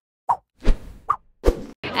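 Short cartoon-style sound effects: two brief pitched pops alternating with two thumps, about a second apart each, with dead silence between them.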